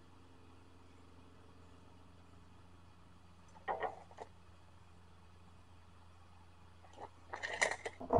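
Mostly quiet, with a steady low hum. Just under four seconds in, a steel tape measure is let go and retracts with a brief rattle and a click as it closes. Small handling noises follow near the end as the trim board is set on the miter saw.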